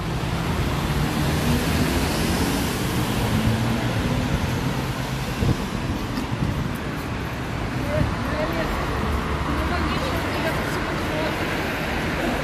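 Urban road traffic: a steady hum of passing cars and vehicle engines, loudest in the first few seconds.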